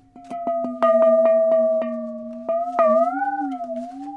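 A cast metal Soviet washstand struck with a cloth-padded mallet and dipped into a tub of water, played as a 'water bell': a quick run of about a dozen strikes sets it ringing, then the strikes stop near three seconds in and the ring wavers up and down in pitch as the vessel moves in the water.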